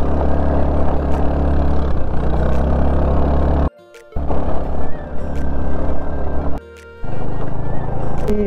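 A motorcycle engine running steadily under way on a rough dirt road, mixed with music. The sound drops out abruptly twice, just before the middle and again near the end.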